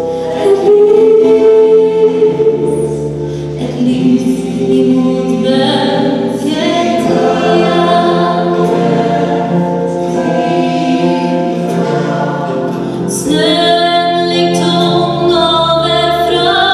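Gospel choir singing in harmony, with a female soloist singing at the microphone in front of it.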